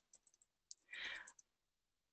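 Faint computer keyboard typing: a scatter of light key clicks over about a second and a half, with a short soft hiss about a second in.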